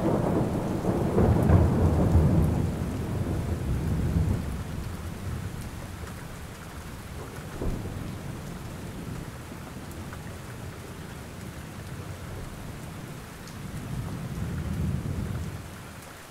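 Steady rain with a long roll of thunder, loudest in the first few seconds and fading away, and a second, softer rumble swelling near the end.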